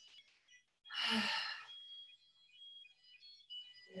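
A woman's audible sighing exhale, one breath of under a second about a second in, followed by faint, thin high-pitched tones.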